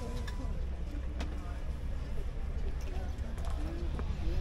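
Indistinct voices of people talking in the background, with a few sharp clicks, one about a second in and another near the end.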